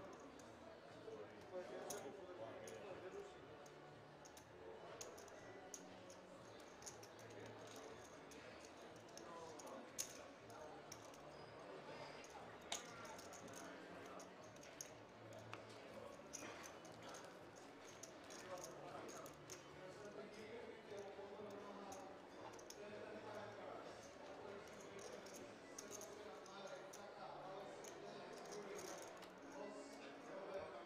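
Faint poker-table ambience: low voices murmuring and scattered clicks of poker chips being pushed and stacked on the felt.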